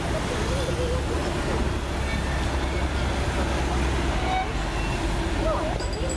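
Steady road traffic noise with people talking.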